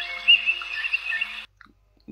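Android smartphone alarm ringing: warbling high notes over steady lower tones. It cuts off suddenly about one and a half seconds in.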